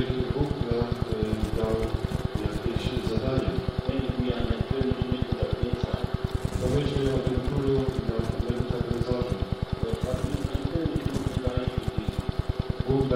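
Voices on an old, low-fidelity recording, over a rapid, regular pulsing hum.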